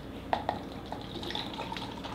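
Apple wine cocktail pouring from a glass bottle into a plastic cup, a faint steady trickle of liquid.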